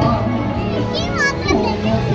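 High-pitched children's voices calling out about a second in and again near the end, over steady background music.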